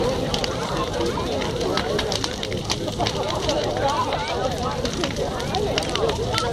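Large bonfire burning, with frequent sharp crackles and pops, over the background chatter of people talking.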